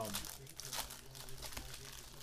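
Foil trading-card pack being torn open and crinkled by hand: an uneven run of crackling rustles.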